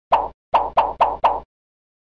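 Cartoon pop sound effects of a thumbs-up 'like' animation. There is one pop, then four more in quick, even succession about half a second later.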